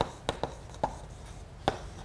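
Chalk writing on a blackboard: about five sharp, irregular taps as the chalk strikes the board.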